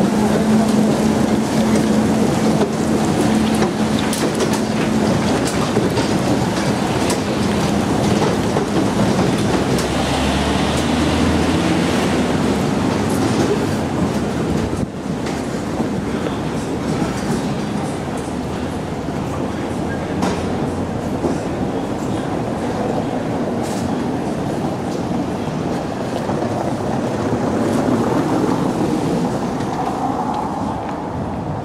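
Tourist road train (a small tractor pulling open carriages) rumbling and rattling over cobblestones as it drives off, with a steady motor hum in the first few seconds. The rattle drops to a lower level about halfway through as it pulls away.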